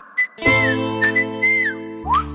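Programme jingle: a whistled tune with notes that slide into one another, over held chords that come in about half a second in.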